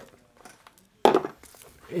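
A short, sharp clink about a second in, fading quickly: a set of screwdrivers shifting in its plastic display tray as the tray is handled.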